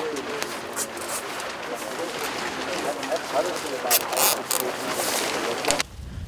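Low background voices under a steady rustling hiss, with brief scratchy crackles about a second in, around four seconds in and just before the end. The crackles come from heat tape cable being handled against the wire mesh of the bioreactor.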